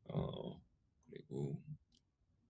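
Speech only: a man's hesitant "uh", then a second short vocal sound about a second later.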